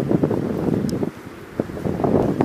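Wind buffeting the microphone in uneven gusts, a low rumble that drops away briefly after about a second and then picks up again near the end.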